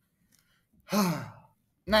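A man's voiced sigh about a second in, breathy and falling in pitch.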